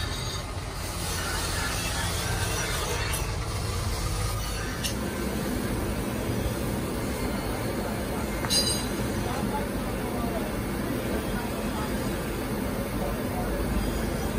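Steady rumbling air rush of a forge blower feeding a bed of glowing coal while a carbon-steel knife heats in it. A couple of brief sharp clicks stand out, the clearest about halfway through.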